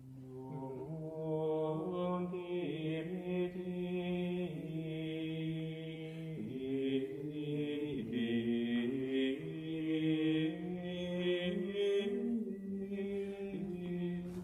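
Men's voices chanting Latin plainchant in slow, held notes that step up and down in pitch, more than one voice sounding at once.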